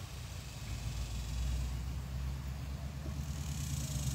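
A low, steady rumble that swells slightly after the first second, with a faint high hiss above it.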